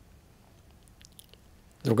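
Faint room tone with a few small, soft clicks, then a man's voice starts speaking just before the end.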